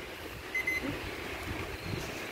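Quiet, steady background noise with no distinct events, the ambient hum of the surroundings.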